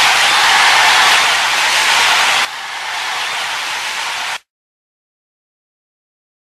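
Loud steady hiss of static with no music in it. It steps down in level about two and a half seconds in, then cuts off abruptly to silence a couple of seconds later.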